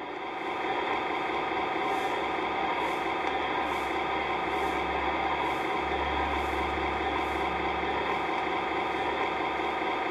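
A steady, even droning hum with several held tones, its lowest part growing stronger about six seconds in.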